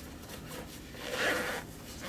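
Hands working the nylon fabric and zipper of a Speck AftPack laptop backpack, with one short rasping slide about a second in.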